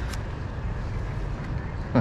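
Steady low rumble of background noise, with a faint click just after the start.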